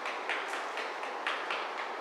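Quick, light footfalls of sneakers on a rubber gym floor during a fast-feet drill, about four taps a second.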